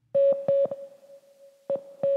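Intro jingle of short synthesizer notes on one pitch: four quick stabs, a fainter held tone, then another stab near the end.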